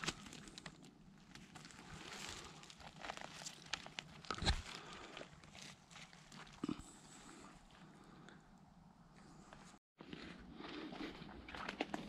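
Rustling and snapping of twigs and dry pine-needle litter, with footsteps on the forest floor, as someone reaches in and moves through undergrowth; quiet, with scattered small cracks and one louder knock about halfway through.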